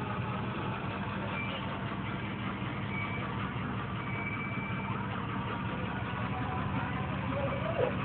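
A lifted off-road 4x4 truck's engine runs steadily at low revs as the truck moves slowly across dirt.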